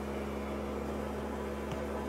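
Dirt Devil central vacuum system running, drawing air steadily through an open floor-level vac pan (automatic dustpan) with a steady motor hum and suction rush, and one small click about three-quarters of the way through.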